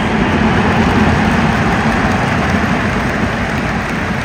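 Large football stadium crowd cheering: tens of thousands of fans making one loud, continuous wash of voices.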